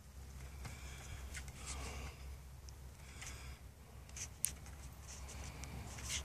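Faint sound of a horse pulling a two-wheeled cart over sand: light, irregular clicks and rattles over a low rumble, with one sharper click about four and a half seconds in.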